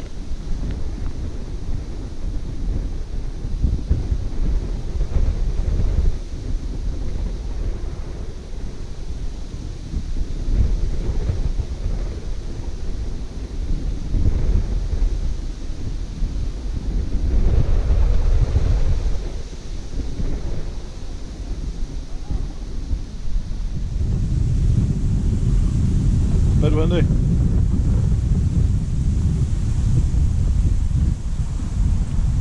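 Strong wind buffeting the microphone: a heavy, gusting rumble that swells and eases, growing stronger for the last few seconds. A short wavering tone sounds briefly near the end.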